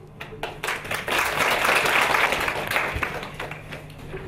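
Audience applause: a few scattered claps start it, it swells into full applause about a second in, then thins out near the end.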